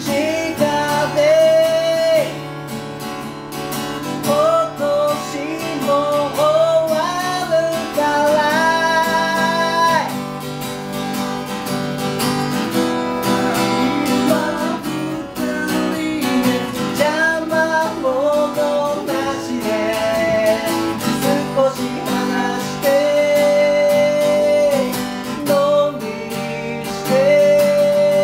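Acoustic guitar played with two men singing a song together.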